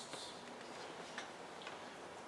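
A few faint, sharp clicks, near the start and about a second in, over the low hiss of a lecture hall's room tone.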